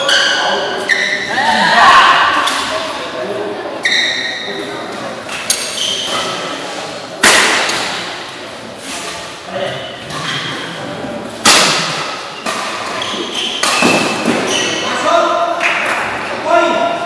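Badminton doubles rally: sharp, echoing racket strikes on the shuttlecock every second or two, the loudest about seven and eleven seconds in. Voices shout around the court throughout.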